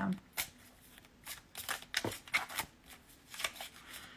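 Tarot cards being handled and shuffled: a scattered run of soft, irregular flicks and snaps of card stock.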